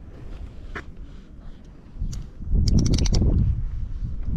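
Rustling handling noise, then a loud burst of rubbing with a quick run of sharp clicks about two and a half seconds in, as a child's helmet chin strap is fastened close to the microphone.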